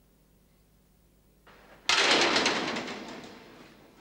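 A heavy door slamming shut about two seconds in, after a brief lead-in, with a rattling ring that dies away over the next two seconds.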